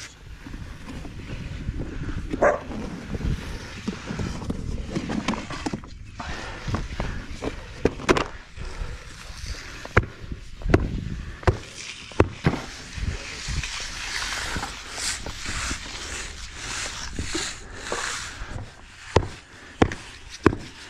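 A hand tamper thudding down on a rubber texture skin laid over fresh concrete, pressing the stamp texture in: irregular knocks, about one or two a second.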